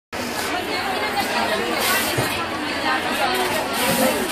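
Chatter of several people talking at once in a crowded indoor room, no single voice standing out.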